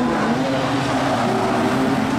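Engines of a pack of production sedan race cars running on a dirt oval, a steady mixed engine drone with no single car standing out.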